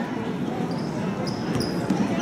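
Basketball game on a hardwood gym floor: sneakers squeak several times and the ball thumps on the court a couple of times, over a steady murmur of crowd voices.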